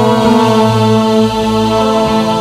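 Live Arabic band music played over a PA system: long, steady held notes and chords, with no singing.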